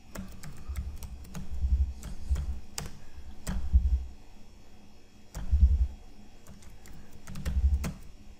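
Typing on a computer keyboard: irregular keystroke clicks while a line of code is entered, with several short dull low thuds in between.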